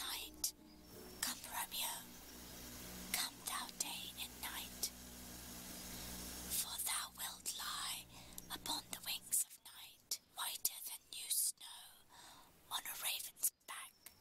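A woman whispering as she reads aloud, in short breathy phrases with pauses between them.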